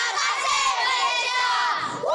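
A group of young children shouting and cheering together, many high voices at once, easing briefly just before the end.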